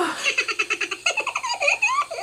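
A rapid run of laughter, quick ha-ha-ha pulses.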